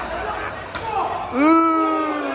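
A single sharp smack, then a loud, drawn-out shout that jumps up in pitch and slowly sinks as it is held for over a second.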